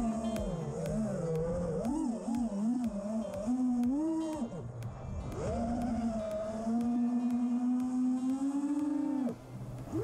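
Brushless motors and 5-inch propellers of an FPV racing quadcopter (Emax Eco 2207 2400KV motors) whining, the pitch rising and falling as the throttle changes, then dropping away sharply about nine seconds in as the throttle is chopped.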